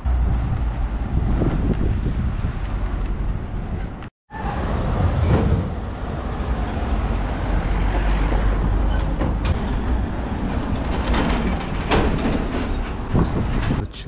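Town street ambience: a steady low rumble of outdoor noise, broken by a brief dropout about four seconds in.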